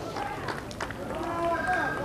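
Faint background voices and murmur from the crowd and players at an outdoor ball ground, well below the level of the commentary.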